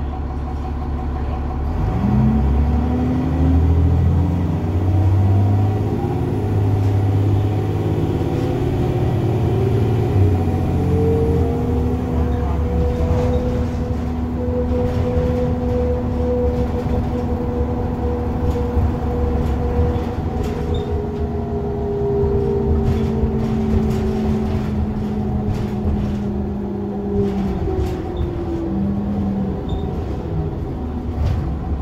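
A 2001 New Flyer D30LF transit bus's Cummins ISC diesel engine and Allison B300R automatic transmission, heard from inside the bus. About two seconds in the bus pulls away, its pitch climbing in steps through the gear changes. It then holds a steady cruising note and eases off near the end.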